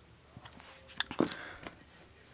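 Small plastic containers being moved and set down on a towel: a sharp click about a second in, then a few soft knocks and a brief rustle.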